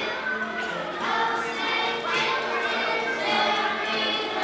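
A group of young children singing together as a choir.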